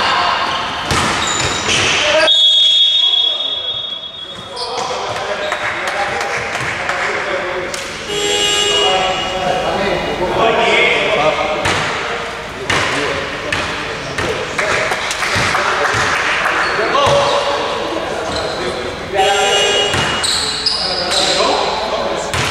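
A referee's whistle blows one steady shrill note for about two seconds, stopping play. Players' voices shout and a basketball bounces on the hardwood court, echoing in a large hall.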